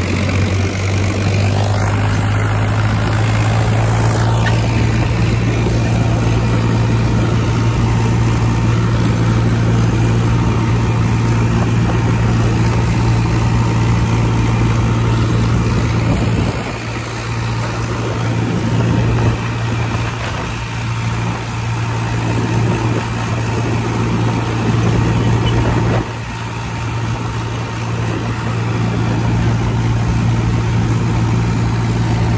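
Powertrac Euro 50 tractor's three-cylinder diesel engine running steadily at road speed, a constant low drone. It turns briefly quieter twice in the second half.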